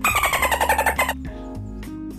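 A man's voice giving a loud, held note into a microphone that falls in pitch for about a second, over a backing music track that carries on quietly after it.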